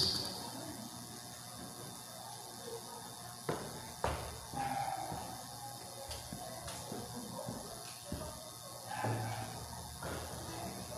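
Quiet room tone with a few soft knocks, the clearest about three and a half and four seconds in, and faint scattered handling and movement sounds.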